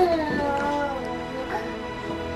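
A toddler's high, drawn-out whine that falls in pitch over about a second and a half, over steady background music.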